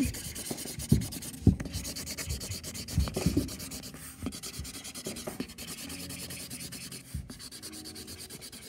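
Felt-tip marker scribbling fast back and forth on cardboard, colouring in a checkerboard square, with a few soft knocks of the hand against the box in the first few seconds.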